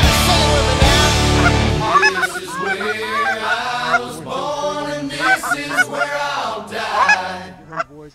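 Music with a heavy bass line cuts off about two seconds in, giving way to a flock of Canada geese honking, many short calls overlapping.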